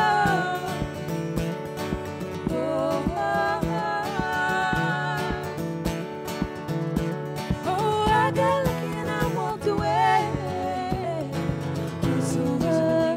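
Live acoustic guitar strummed under women singing a song, in a folk-country style.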